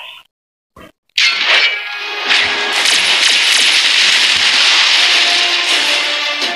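Animated-series soundtrack: a short silence, then about a second in a sudden loud cracking crash sound effect that runs into dense noise over dramatic score music.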